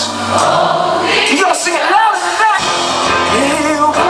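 Live band music: a male lead vocal sings wavering, held notes over guitar and band, recorded from the audience.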